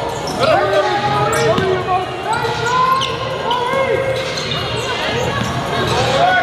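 Live basketball game sound on a gym court: the ball bouncing, sneakers squeaking in short chirps, and players and spectators calling out.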